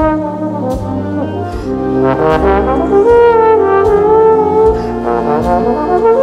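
Wind orchestra music: the brass section plays held, swelling notes over a sustained low accompaniment, with a few percussion strikes scattered through it.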